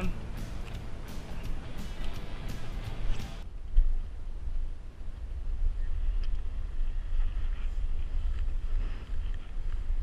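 Wind rumbling on the microphone, a steady low rumble, with a single thump shortly after a cut about three and a half seconds in. Before the cut, a noisier stretch with clicks.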